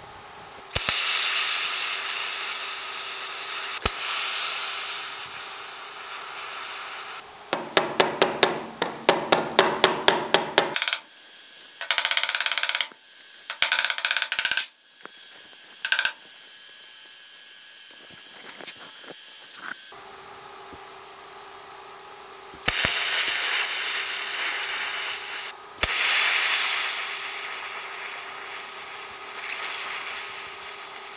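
TIG welder tacking a sheet-steel patch panel into a truck cab's filler-neck hole: several arcs of a few seconds each, each a steady hiss. Between the first tacks and the later ones comes a quick run of about a dozen light body-hammer taps on the tacked patch.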